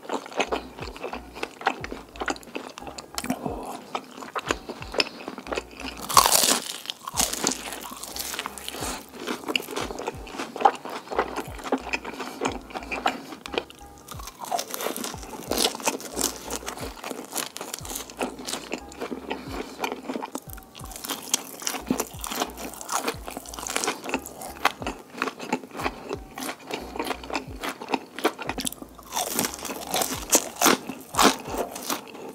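Close-miked eating: crisp bites of battered fried fish crunching and being chewed, with a particularly loud crunch about six seconds in.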